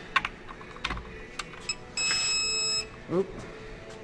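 Digital torque-angle wrench on a diesel main bearing cap bolt: a few sharp ratchet clicks, then a steady electronic beep lasting under a second, the wrench's alert that the bolt has reached its set turn angle.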